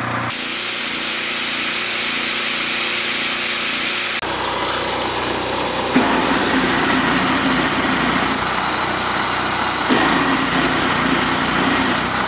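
A Honda GX-clone generator engine running under electrical load, mixed with the whine of 120-volt angle grinders and a snowblower's electric starter cranking, in several short clips with abrupt cuts. The engine holds its speed under load, a sign the cleaned carburetor is working properly.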